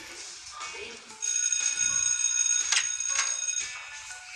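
A bright, steady electronic tone, like a ringtone, held for about two and a half seconds from about a second in, with two short clicks during it, over background music.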